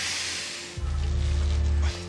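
Tense background score: a deep bass note held for about a second, after a short hiss near the start.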